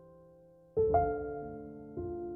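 Slow, quiet piano music: held notes fade away, then a chord is struck a little under a second in, with another note just after it and one more near the end.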